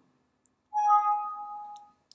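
Windows 7 system alert chime: a single bell-like ding of two tones sounding together, ringing out and fading over about a second. It signals a warning dialog popping up on screen.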